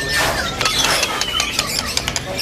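Thin, drawn-out whistles and short chirps from caged songbirds, with a brief hissing rush near the start.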